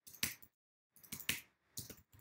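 Computer keyboard keystrokes typed in three short runs of a few keys each, with brief pauses between.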